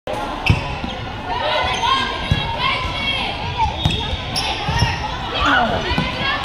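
Volleyball rally in a gym: a handful of sharp thumps of the ball being struck, the loudest about half a second in, over players' and spectators' voices echoing in the hall.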